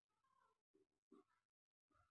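Near silence: the sound track is almost empty between spoken phrases, with only very faint traces.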